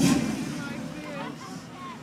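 Lifted pickup truck's engine giving a short loud rev right at the start, fading over about half a second as it moves off, with crowd voices underneath.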